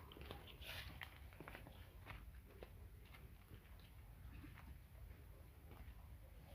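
Near silence, with faint scattered ticks and rustles of footsteps through orchard grass and leaf litter.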